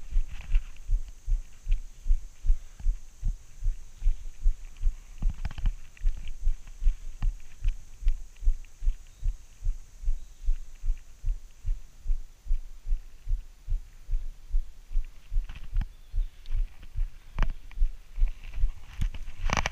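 Regular low thumps, about two and a half a second, with scattered light clicks and rattles, picked up by an action camera's microphone on a mountain bike ridden along a dirt forest trail.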